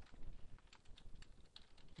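Computer keyboard typing: a quick run of faint, irregular keystrokes.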